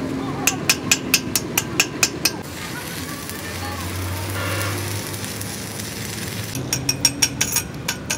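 Chipping hammer striking the weld on a steel truck axle housing in a quick run of sharp taps, about five a second. It gives way to a few seconds of stick-welding arc crackle and hum, and the tapping starts again near the end.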